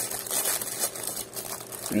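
Packaging rustling and crinkling, soft and irregular, as a small package is handled and opened.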